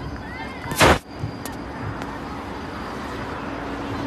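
One loud, sharp burst of noise close to the microphone, lasting about a quarter of a second, just under a second in, over steady open-air field background noise.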